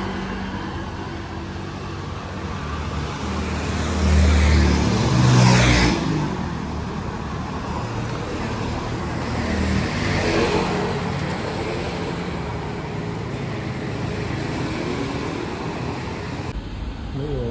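Road traffic on a busy city street: a steady hum of engines and tyres, with a louder vehicle going by about four to six seconds in and another about ten seconds in.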